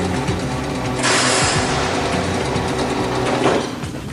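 Spaceship machinery sound effect: a mechanical whirr, then a loud hissing rush that starts about a second in and stops shortly before the end.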